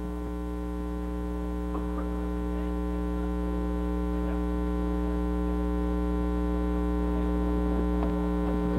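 Steady electrical mains hum: a buzz of many evenly spaced overtones above a low hum, slowly growing louder, with nothing else standing out above it.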